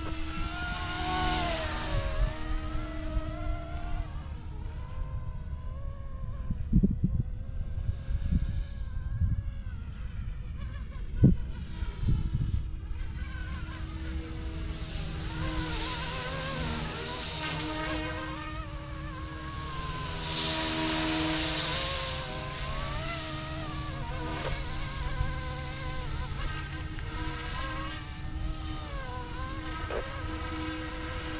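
YUXIANG F09-S RC helicopter flying fast overhead: the electric motor and rotor whine swings up and down in pitch as it passes, twice. A few short low thumps come in the middle.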